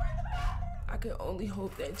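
High, whimpering cries of distress from a woman, over a steady low rumble.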